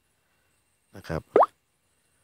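Dead silence, then about a second in a man briefly says the Thai particle 'na khrap', ending in one quick, sharply rising glide.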